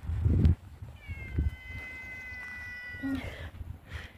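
A ginger-and-white cat gives one long, thin, high meow held at a steady pitch for about two seconds. A low thump comes right at the start.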